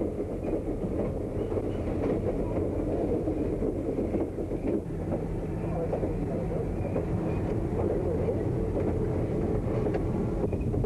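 A passenger train running, heard from on board: a steady rumble of the cars rolling on the rails.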